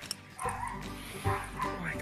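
Background music with a dog barking and yipping a few times.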